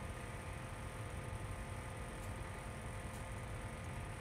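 Steady, low background hiss with a faint hum: room tone, with no distinct handling sounds.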